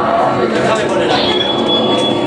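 Indistinct chatter and voices of a small crowd in a room, with a thin steady high whine starting about halfway through.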